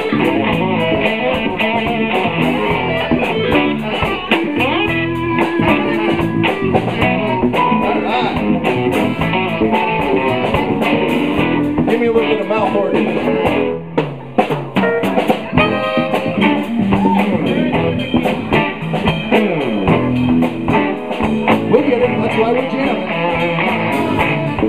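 Live blues band jamming: tenor saxophone playing over electric guitar, bass and drum kit. The music drops in level briefly about 14 seconds in, then carries on.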